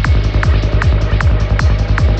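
Dark psytrance at 155 BPM: a steady four-on-the-floor kick drum, about two and a half beats a second, with a rolling bassline filling the gaps between kicks and a dense, growling synth texture above.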